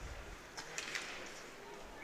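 Faint ice hockey rink sound during live play, with a couple of faint knocks of stick or puck about half a second in.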